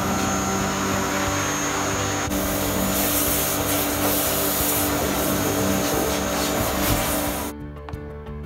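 Pressure washer running, its jet spraying water into a boat's diesel tank to flush out sludge: a steady motor-and-spray noise that turns hissier about two seconds in and cuts off shortly before the end.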